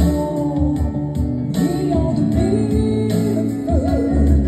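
A woman singing a slow French chanson live into a microphone over a backing accompaniment, her held notes wavering with vibrato.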